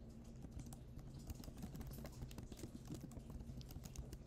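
Faint typing on a computer keyboard: a quick, uneven run of key clicks.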